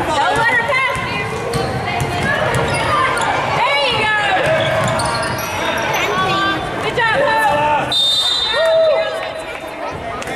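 Spectators and players shouting over a basketball game, with a ball bouncing on the hardwood court. About eight seconds in, during a scramble for a loose ball, a referee's whistle blows for about a second.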